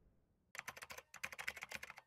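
Computer-keyboard typing sound effect: rapid keystrokes in quick runs, starting about half a second in, with a brief gap after the first run.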